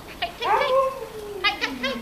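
A dog vocalising excitedly while tugging on a toy: short high-pitched yips, a long call that slides down in pitch, and a few more yips near the end.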